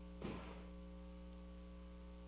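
Faint steady electrical mains hum on the track, with a brief faint noise about a quarter second in.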